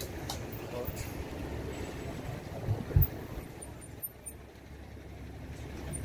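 Busy street ambience: indistinct voices of people around the food stalls over a steady low traffic rumble, with a short low thump about three seconds in.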